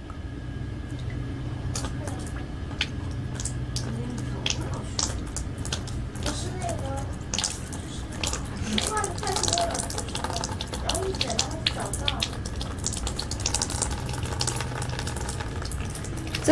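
Water poured from a plastic bottle through a funnel and tube into the cooling-water inlet of a diode laser hair removal machine, trickling with many small clicks and splashes over a steady low hum.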